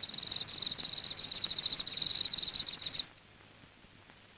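Crickets chirping: a rapid, steady pulsing trill that cuts off suddenly about three seconds in.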